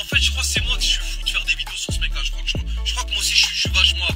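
Hip hop track with rapped vocals over a beat of deep bass hits that drop in pitch, a sustained low bass and fast hi-hats.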